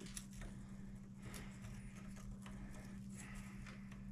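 Light, scattered clicks and taps of small plastic and metal RC truck parts being handled and fitted at the rear suspension by hand, over a steady low hum.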